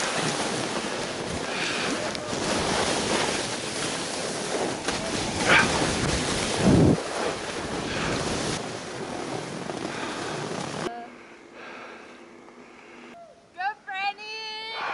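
Wind rushing over the camera microphone, with skis hissing through snow during a downhill run; the noise drops away suddenly about eleven seconds in as the run ends. A short voice is heard near the end.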